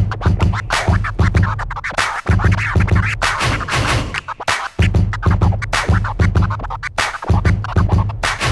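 Turntable scratching on a Technics deck: a hand pushes and pulls a vinyl record under the needle while the mixer fader chops the sound into rapid stuttering cuts. A bass-heavy sample is cut off and back in, in quick blocks.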